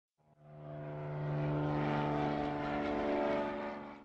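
A steady, droning intro sound effect with one low pitch and its overtones. It fades in over the first second, holds, and fades away toward the end.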